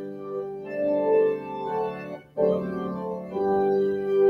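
Organ playing slow, sustained chords, with a brief break a little over two seconds in before the chords resume.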